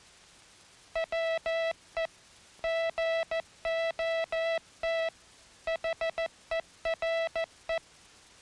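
International Morse code keyed as a single steady, buzzy tone, spelling 'WE GOT HERE'. The short dits and long dahs have tight gaps within each letter, longer gaps between letters and the longest gaps between the three words. It starts about a second in and stops just before the end.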